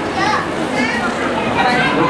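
Many children talking and chattering at once, their voices overlapping.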